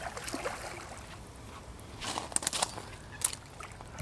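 Faint water sloshing, with a few small splashes and clicks about two seconds in, from a hooked common carp swirling at the surface during the fight.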